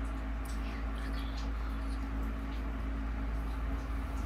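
Quiet room with a steady low hum, joined by a few faint, soft ticks; no clear knock stands out.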